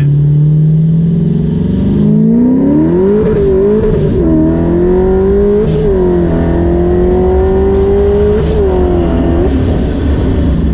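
Supercharged C7 Corvette's 6.2-litre V8 pulled hard from first gear: after about two seconds the engine note climbs, then drops back sharply at each quick upshift, three times. The stock clutch, worn by 20,000 miles of abuse at over 600 horsepower, is hanging on for dear life through the quick shifts.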